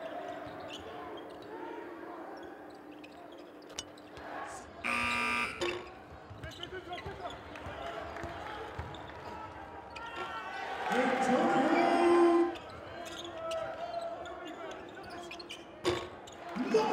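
Live college basketball game sounds in an almost empty arena: a basketball being dribbled and players shouting on the court. An arena buzzer sounds for about a second, about five seconds in.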